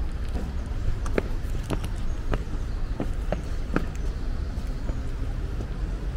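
Footsteps climbing stone steps: a crisp step roughly twice a second, over a steady low rumble.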